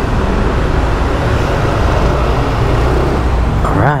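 Scooter engine running at low speed with road and wind noise, a steady low rumble while the bike creeps along. A voice starts just before the end.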